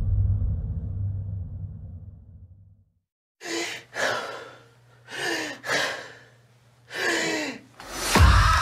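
A low, dark musical rumble fades out over the first three seconds and the sound drops out briefly. Then a man breathes heavily: five loud, ragged gasps and sighs, some with a falling voiced groan, over a low steady hum.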